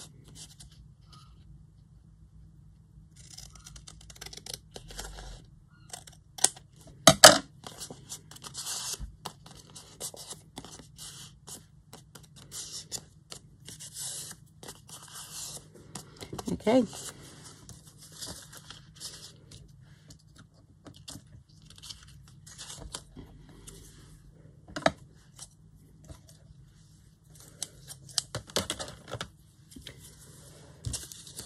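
Paper being cut with scissors and handled at a craft table: irregular rustling and crinkling of paper strips with short snips and clicks. There is a sharp, loud click about seven seconds in.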